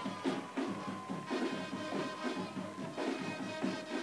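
Music with a steady beat, playing moderately loud.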